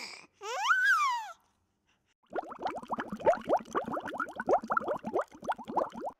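A baby's voice: a drawn-out coo that rises and falls about a second in, then after a short pause a fast run of short rising vocal sounds lasting to the end.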